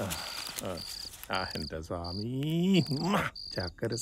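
Crickets chirping in a steady rhythm, about two short high chirps a second. A man's low, wordless voice rises and falls at intervals over them.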